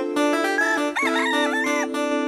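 A rooster crowing once over background music; the crow starts about half a second in and lasts more than a second, above steady sustained chords with plucked notes.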